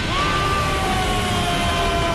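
A man's long held yell in a dubbed anime, its pitch slowly falling, over a steady low rumble of a power-up sound effect.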